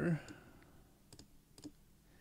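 A few computer mouse clicks: two close together about a second in and another about half a second later.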